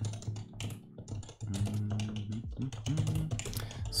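Typing on a computer keyboard: quick, irregular runs of key clicks as keyboard commands are entered.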